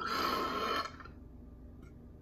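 A person burping once, loudly, for just under a second.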